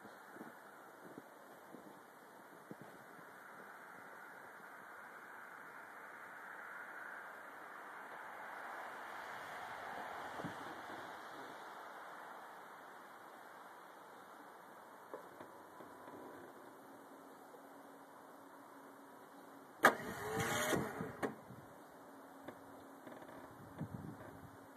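Starter motor of a 1990 Ford F-150 with the 4.9-litre (300) straight-six whirring for about a second and a half near the end without engaging the flywheel, so the cold engine does not turn over. Before it, a long quiet stretch of faint background.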